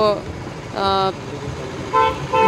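A short vehicle horn toot, held on one steady pitch for under half a second about a second in, over a steady rumble of passing road traffic.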